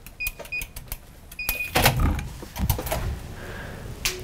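Electronic door keypad beeping: two short beeps, then one longer beep, followed by loud clunks and clicks as the door is unlatched and pushed open.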